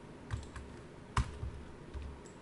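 A few separate clicks of computer keyboard keys and a mouse button as objects are selected, the sharpest about a second in.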